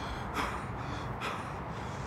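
A person breathing in short, breathy gasps, a few in quick succession, the first about half a second in being the loudest.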